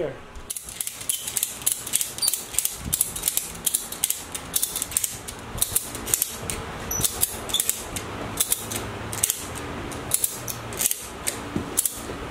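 A ratchet strap being cranked, its pawl clicking in quick, repeated strokes as it tensions a chain running through a pulley to hoist a heavy load.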